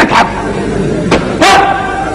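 A man's voice in short, loud, bark-like shouts, the last one held for about half a second.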